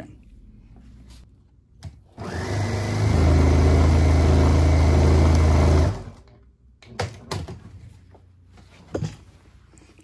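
Electric sewing machine running for about four seconds as it stitches back and forth across two overlapped ends of elastic, picking up speed about a second in and then stopping abruptly.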